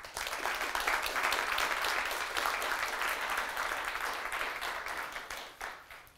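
Audience applauding. It starts suddenly and dies away near the end.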